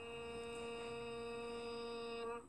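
A man's voice holding one long, steady-pitched note: the drawn-out vowel of the Arabic letter name "ghain", recited as a Qur'an-reading pronunciation drill.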